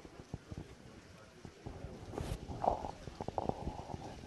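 Faint outdoor ambience in light rain: a low rumble with irregular soft knocks on the microphone, and a brief distant voice a little past the middle.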